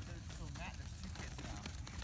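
Faint background voices over a steady low rumble, typical of wind on a phone microphone outdoors, with small scattered clicks and crackles.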